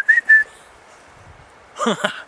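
A man whistling two or three short notes at one pitch, the first sliding up slightly, in the first half second. Near the end a falling voice sound begins.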